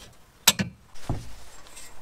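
Locking clamp pliers snapping shut on a steel tube with one sharp metallic click, followed about half a second later by a dull knock.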